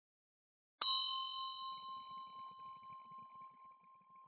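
A single strike on a small metal bell, ringing out with a clear high tone that fades slowly with a slight waver over about three seconds.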